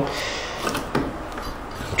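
Low handling noise from a handheld camera being moved about, with a couple of light knocks about two-thirds of a second and a second in.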